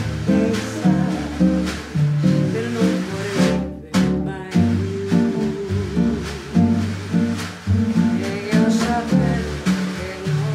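A live bossa nova band plays: a nylon-string acoustic guitar and electric bass carry the rhythm under a snare drum, with a female voice singing.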